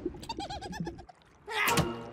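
Cartoon character's wordless vocal sounds: a quick run of short, warbling, coo-like notes in the first second, then a louder grunting exclamation about one and a half seconds in.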